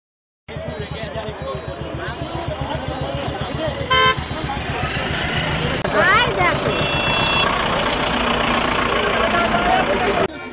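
Roadside traffic: a vehicle engine running with a steady low rumble, with brief horn toots about four seconds in and again about seven seconds in, over a crowd's voices.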